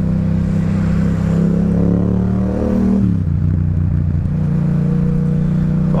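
Yamaha MT-07's parallel-twin engine, fitted with an Akrapovic exhaust, pulling under acceleration with its pitch rising. About three seconds in the pitch drops sharply, as at an upshift, and the engine pulls on steadily.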